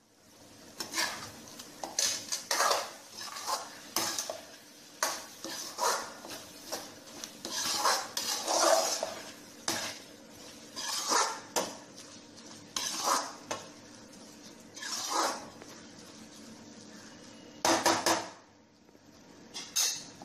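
Metal spatula scraping and clinking against a metal kadhai as a thick, half-cooked vegetable mixture is stirred, in many irregular strokes, with a short lull before a last burst of strokes near the end.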